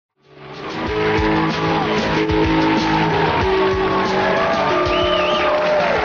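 Opening theme music of a TV talk show, fading in quickly from silence: long held chords over a steady drumbeat.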